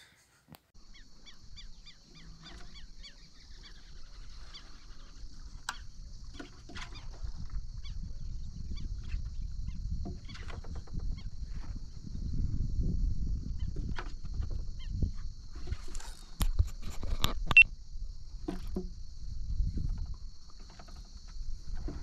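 Riverside ambience: scattered bird calls over a steady high-pitched insect drone, with low wind rumble on the microphone that grows louder as it goes. A few sharp knocks come about three quarters of the way through.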